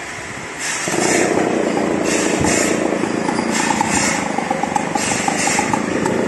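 Two-stroke Stihl chainsaw starting up about a second in, then running steadily.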